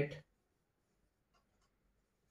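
Marker pen writing on a whiteboard: a couple of faint short strokes a little past the middle, otherwise almost silent.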